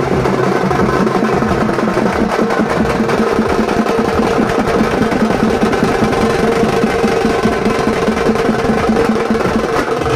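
Loud, fast drumming with steady held notes sounding over it: traditional percussion-led festival music for a Kali dance procession.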